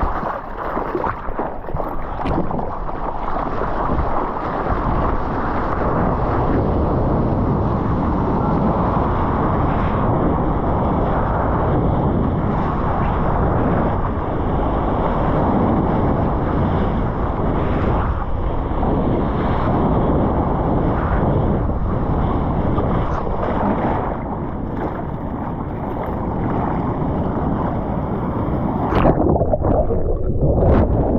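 Water rushing and splashing against a surfer's body-mounted action camera, with wind noise buffeting its microphone: hands stroking the water while paddling, then a steady loud rush of moving water on the wave. Near the end a sudden splash as the camera is pushed under the water.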